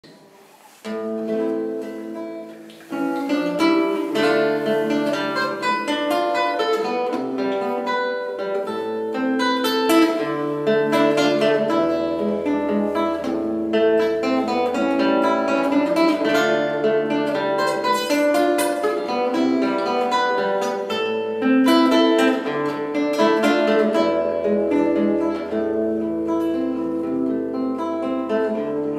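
Acoustic guitar playing an instrumental introduction. It starts about a second in and grows fuller a couple of seconds later, over a long-held low bass tone.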